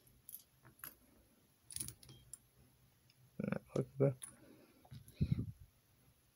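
Small plastic construction-toy parts clicking and clattering lightly as a hand sorts through a loose pile. A few louder, low-pitched sounds come in the middle.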